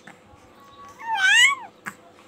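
A baby's high-pitched squeal: one call, a little after a second in, that rises and then falls. A short click follows near the end.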